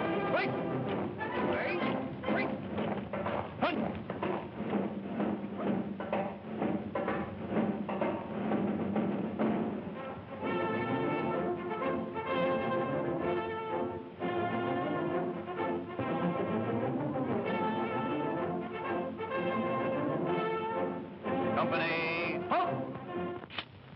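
Brass band march music: a steady drum beat, about three beats a second, under brass for the first half, then held brass phrases.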